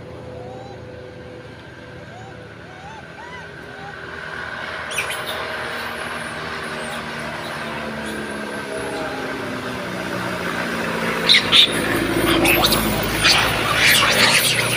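A road vehicle approaching, its engine hum and tyre noise growing steadily louder over the second half and loudest near the end, with a couple of sharp loud sounds about eleven seconds in. Faint short chirping calls are heard in the quieter first few seconds.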